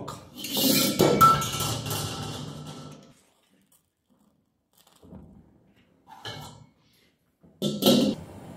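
A steel wok being taken off a gas burner and the burner lit by hand: a loud rush of hiss and clatter for the first three seconds, two faint clicks a few seconds later, and a sharp metal clank near the end as the wok is set back on the ring.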